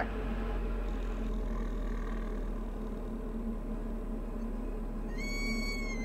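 Low, steady cockpit noise of a Diamond DA40 in the landing flare, heard through the headset intercom. About five seconds in, the stall warning starts: a high-pitched tone that rises slightly, then holds steady. It sounds as the nose is pulled up for touchdown and the wing nears the stall.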